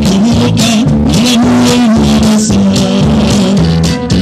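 Conjunto norteño band playing live: accordion over electric bass, drums with cymbals and guitar, to a steady beat.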